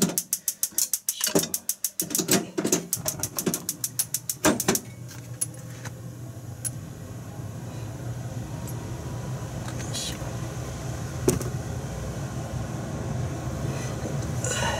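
Gas hob burner being lit: the igniter clicks rapidly, about six times a second, for about five seconds. The flame catches about two seconds in and then burns with a steady low rush. A couple of single light knocks come later.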